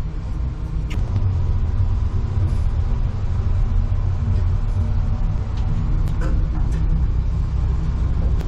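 Low, steady rumble inside a moving Hitachi elevator car, with a few light clicks.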